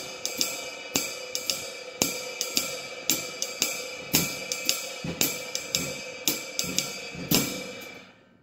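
Drum kit playing a jazz swing time pattern on a ride cymbal, about two strokes a second over a ringing wash, with the bass drum feathered softly underneath by a felt beater. The playing stops just before the end.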